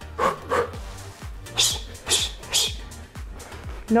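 A woman breathing out sharply in time with her punches while shadowboxing: two short huffs, then three hissing "shh" breaths about a second later. Background music with a steady beat runs under them.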